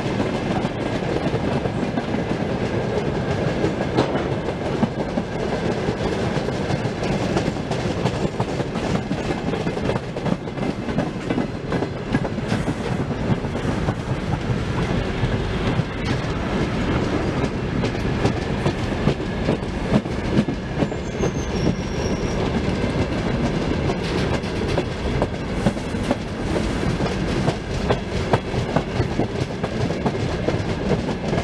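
Freight train of hopper and open wagons rolling past close by: a loud, steady rumble with continuous clickety-clack of wheels over rail joints.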